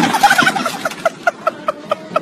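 High-pitched cackling laughter from a person, a rapid run of short 'heh' notes about five a second, after a brief clatter at the very start.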